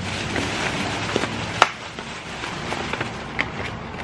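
Rustling and crinkling of a paper takeout bag and a clear plastic clamshell food container being handled, with scattered small clicks and one sharp click about one and a half seconds in.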